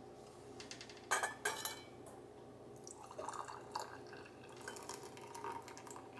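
Metal and glass clinks as a stainless canning funnel is handled on a glass mason jar, the loudest a quick cluster about a second in, then hot fruit jelly pouring from a saucepan through the funnel into the jar, with light dripping and clatter.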